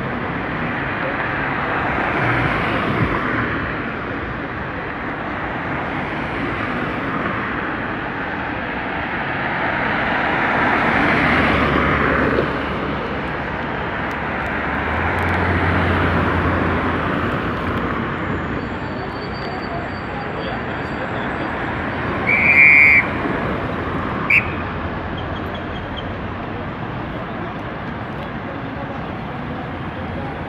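Road traffic on a busy city avenue, vehicles swelling past every few seconds, with a low engine hum in the middle. About two-thirds of the way through comes a short car horn beep, followed by a sharp click.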